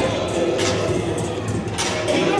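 Dance music with a steady beat and heavy bass, about two beats a second.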